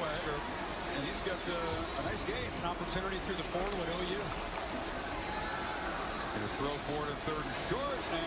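Football TV broadcast audio playing at low level: announcers' voices talking over steady stadium crowd noise.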